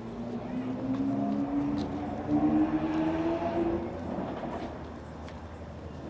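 A motor vehicle driving past on the street, its engine note climbing steadily in pitch as it accelerates. It is loudest a little past the middle, then fades as it moves away.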